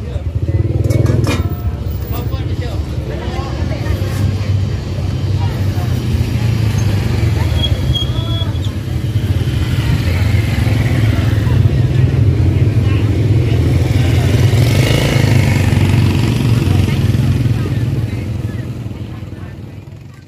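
A motor vehicle engine running steadily with a low hum, with indistinct voices over it; the sound fades out near the end.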